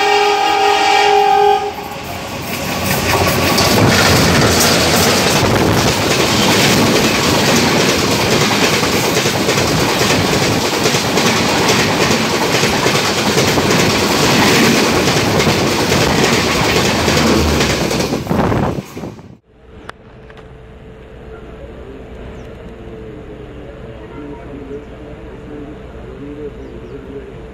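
A train horn sounds and stops about a second and a half in, then two passenger trains pass each other close alongside at speed: a loud rush of wind and wheel clatter heard from an open coach door. The rush cuts off suddenly about 19 s in, giving way to the quieter steady rumble of a train running.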